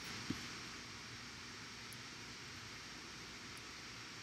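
Steady low hiss of room tone and microphone noise, with one faint short click about a third of a second in.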